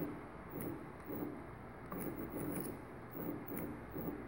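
A pair of small stepper motors turning together in short, faint bursts, a soft buzz coming and going about every half second to a second, with a few light clicks, as they are jogged back the other direction.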